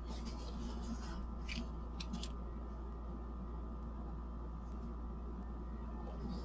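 Thin plastic stencil sheets being handled and swapped: faint rustles and a few light clicks, most of them about one to two seconds in, over a steady low hum.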